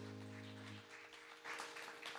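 The worship band's last sustained chord holding and then cutting off under a second in, followed by faint scattered rustling and shuffling noises.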